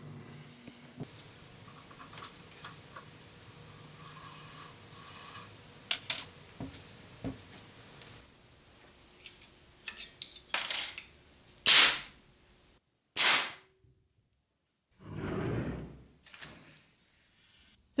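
Rubbing, scraping and small knocks of handling on a wooden workbench, then a short, loud blast of gas from a CO2 fire extinguisher firing a straw from a pipe launcher about two-thirds of the way through. A second short blast and a brief rush of noise follow, between stretches of silence.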